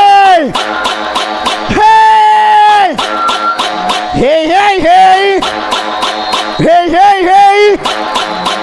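Electronic brega dance music played live on a Pará aparelhagem sound system: a pitched lead line of short bending notes that run into long held notes about a second each, repeating the phrase several times.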